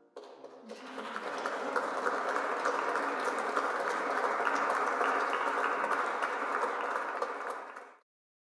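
Audience applauding: a few scattered claps at first, quickly filling out into steady applause, then cut off abruptly near the end.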